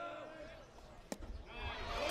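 A baseball bat hitting a pitched ball: one sharp crack about a second in, after which a crowd of spectators starts cheering, growing louder near the end.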